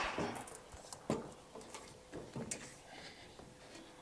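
A few faint knocks and clicks as boots step onto and climb the rungs of an aluminium ladder hooked on a trailer's side wall. The clearest knocks come about a second in and again midway.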